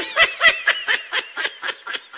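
High-pitched snickering laughter: a rapid run of short 'hee-hee' bursts, about five or six a second, starting suddenly and growing fainter.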